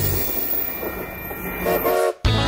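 Amtrak Pacific Surfliner double-deck passenger train passing close by, a steady rumble of its wheels running on the rails.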